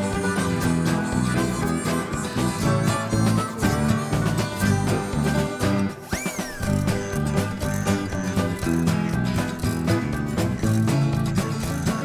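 Background music in a country style with plucked strings and a steady beat, with a short swooping tone about halfway through.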